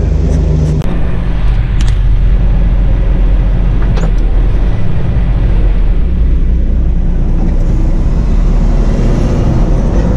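Semi-truck diesel engine running as the tractor-trailer drives off, heard from inside the cab; its note shifts about a second in, and a few short clicks sound over it.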